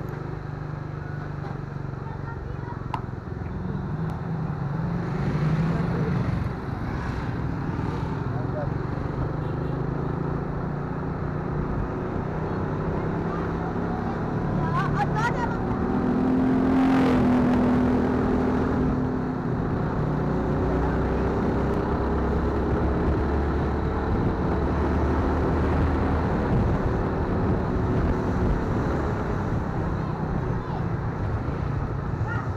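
Motorcycle engine running steadily while climbing, with wind and road noise; it grows briefly louder about sixteen seconds in.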